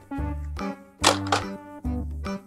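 Background music with a steady beat: a low thud about once a second under sustained instrument notes.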